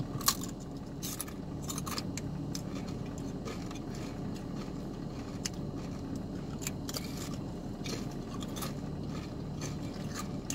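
Kettle chips being bitten and chewed close to the microphone: irregular crisp crunches, thickest in the first couple of seconds, over a steady low hum in a car cabin.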